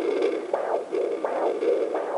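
Sonotech Pro fetal doppler's speaker playing the pulsing sound of the mother's own arterial blood flow, about two pulses a second (116–118 beats a minute). This is the maternal pulse from an artery near the hip, which is often mistaken for the baby's heartbeat.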